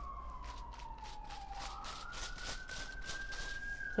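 Emergency vehicle siren in a slow wail: one sweep that falls in pitch over the first couple of seconds, then rises again toward the end.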